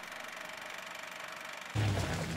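A faint hissing title-card transition sound, then near the end a low rumble starts as a pickup truck drives on screen.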